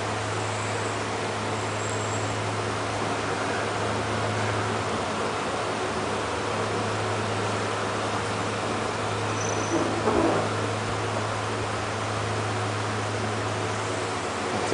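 Steady background hum with a hiss over it, the constant sound of a machine such as an air conditioner running in the room. A brief faint voice-like sound comes about ten seconds in.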